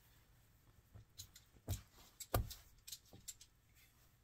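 Soft handling noises on a wooden work table: a cloth towel being laid flat and a leather-hard clay mug being set on it. There are several short, faint knocks, the strongest a little past halfway.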